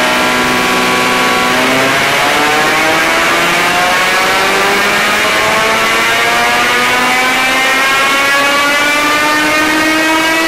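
Nissan 350Z's VQ35DE 3.5-litre V6, breathing through long-tube headers and a cat-back exhaust, running loud on a chassis dyno. It holds a steady note, then about two seconds in the revs start to climb slowly and evenly under load, the pitch rising steadily through the rest of the pull.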